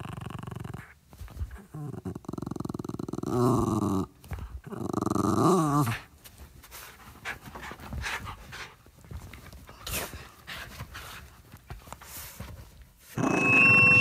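A dog growling in rough bouts, the loudest two about three and five seconds in, with fainter sounds between. Near the end a loud steady high tone starts as the band's track begins.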